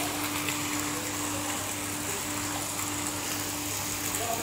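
Swimming-pool water sloshing and splashing as children wade through it, over a steady low hum.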